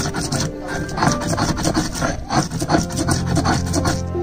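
Stone muller worked back and forth on a stone grinding slab (sil batta), crushing fresh coriander into a wet paste in rapid repeated grinding strokes, with background music underneath.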